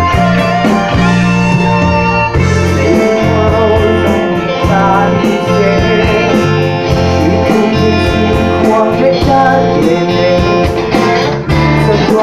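A live band playing loudly: electric guitars, bass guitar and a drum kit with steady drum hits, and a singer's voice over them.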